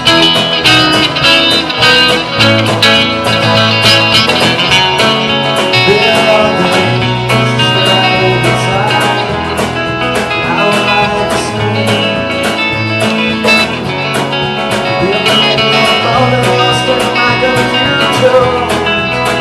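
Live band playing an instrumental passage: electric guitar over bass guitar and drums with cymbals, with a steady beat.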